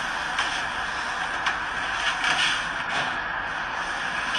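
A paper towel rubbing across a kitchen countertop in repeated wiping strokes, about one a second, smearing spilled hot sauce over the surface, over a steady background hiss.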